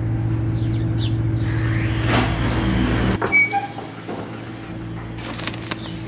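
A steady low hum from a running motor or electrical appliance. It drops to a quieter level about three seconds in.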